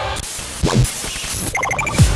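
Intro of a dubstep track: noisy electronic sound effects with a loud low swell about two-thirds of a second in, then a quick run of stuttering high blips near the end.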